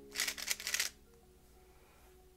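A GAN 356 Air SM magnetic speedcube turned rapidly through a U-perm algorithm: a quick burst of plastic clicking and clacking layer turns lasting well under a second.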